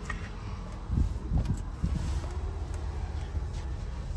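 Handling noise on a hand-held phone microphone as it is moved around a car cabin: a low rumble with a few soft thumps about a second in.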